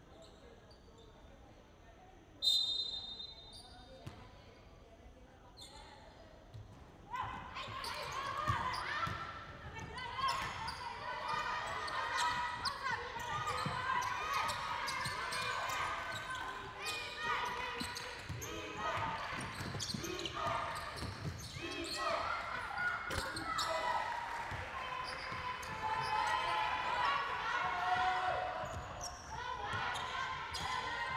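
A short shrill whistle blast about two and a half seconds in, typical of a referee's whistle. From about seven seconds, basketball play on a hardwood court in a large hall: the ball bouncing, with voices calling out.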